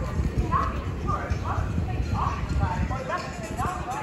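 Indistinct voices of people talking, over a low, uneven rumbling noise.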